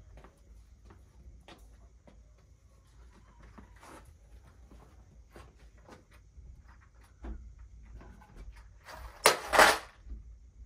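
A small object thrown or dropped onto a concrete floor near the end, a sudden loud clatter in two quick bursts: a startle noise in a puppy temperament test. Before it, only faint scattered taps.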